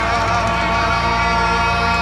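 Live rock band holding a sustained chord while a male singer holds a long note over it, the close of the song.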